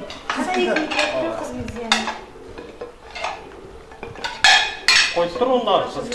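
Ceramic plates clinking and a serving utensil scraping in a large cauldron of stew as food is dished out, with two loud clatters of plates about half a second apart after four seconds in.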